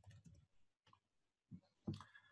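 Faint clicks of a computer keyboard and mouse during code editing: a few in the first half-second, then near silence, then a couple more near the end.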